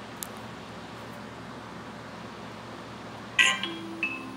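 Steady hiss from an old videotaped TV broadcast. About three and a half seconds in, a sudden loud sound with several held tones begins, the start of the network's logo audio.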